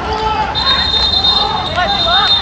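Several men's raised voices shouting over one another as players scuffle on a football pitch. A steady high-pitched tone sounds over them from about half a second in.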